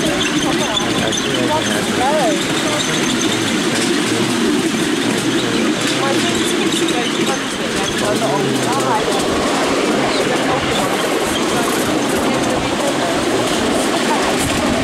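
Miniature railway train running along its track, heard from a passenger car as a steady, unbroken running noise, with faint voices in it.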